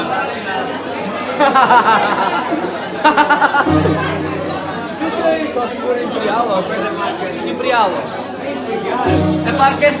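People talking over one another in a hall, with a short low held accordion note or chord about a third of the way in and another near the end.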